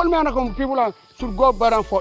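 A voice singing a repetitive phrase over background music, with a steady low bass note underneath.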